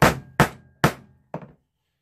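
Four blows of a claw hammer on a leather hole punch, driving it through the sheath leather into a wooden board, about half a second apart, the last one lighter.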